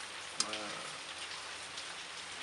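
A steady, even rain-like hiss, with a sharp click about half a second in followed by a brief hum of a man's voice.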